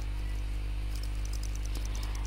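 Steady low electrical hum in the lecture recording, with faint, evenly repeated high chirps or ticks over it.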